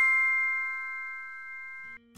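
A bell-like chime sound effect for a logo reveal: a chord of several clear tones struck once and left to ring, fading slowly, then cut off suddenly at the end.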